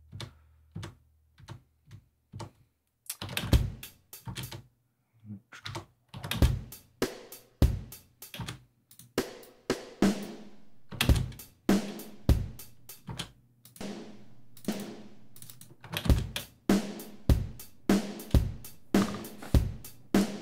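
Sampled drum-kit sounds (kick, snare and hi-hat) from a programmed MIDI drum track. Single hits sound one at a time at first as notes are entered. Near the end, a short beat in 15/16 plays back with evenly spaced hits.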